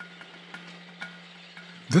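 A steady low hum under a faint hiss, with a couple of faint clicks.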